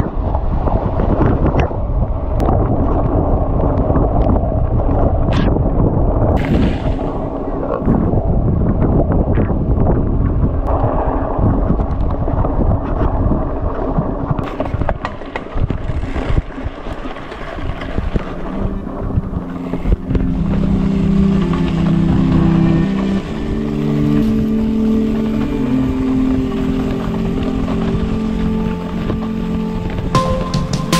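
Wind buffeting the microphone over the rattle and knocks of a mountain bike rolling over a dirt and stony trail. About eighteen seconds in, background music with steady held notes comes in under it.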